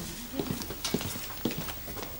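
Footsteps walking across a room: a run of light, uneven knocks, about seven in two seconds.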